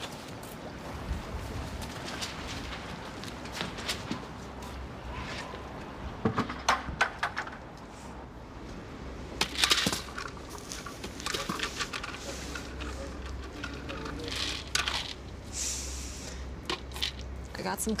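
Scattered knocks and clatter, the sharpest about ten seconds in, as a plastic jar is knocked over and its dark granules spill across the floor. A low steady hum runs underneath.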